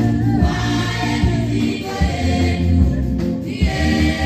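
A choir of women's and men's voices singing a gospel song into microphones, with a steady bass accompaniment underneath.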